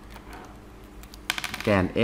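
A quick run of small sharp clicks and taps, about a second and a half in, as a plastic ruler and a marker are handled on paper.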